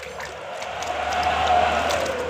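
Water sloshing and splashing in a plastic bucket as a hand swishes a muddy toy through it to wash the mud off, swelling louder toward the middle and easing near the end.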